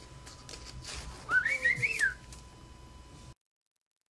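A man whistles briefly: one short wavering note that climbs and then falls, over faint clicks of trading cards being handled. Near the end the sound cuts out to dead silence.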